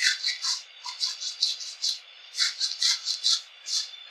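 Hands scrubbing shampoo lather through wet hair: quick, irregular squishes of foam, about four a second.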